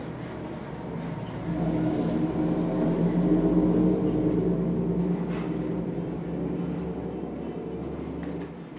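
A low engine rumble that swells about a second and a half in and then slowly fades over several seconds, over a steady low hum.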